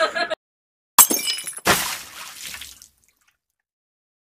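Sound effect of an animated subscribe-button overlay: a sharp, glassy hit about a second in, then a second crash that fades away over about a second.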